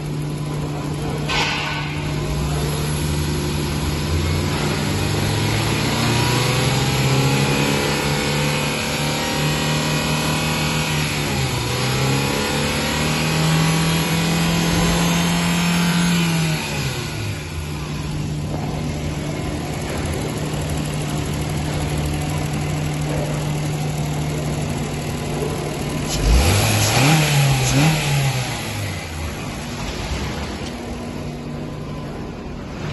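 Honda Insight ZE2's 1.3-litre i-VTEC four-cylinder petrol engine running and being revved. The revs climb over about ten seconds, fall back to idle, and a short rev blip follows near the end.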